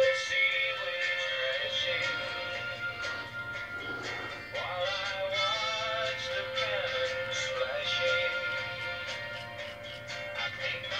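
Music with singing, with long held tones.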